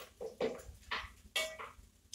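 A few short clinks and scrapes of a pot and cooking utensils being handled on a stove.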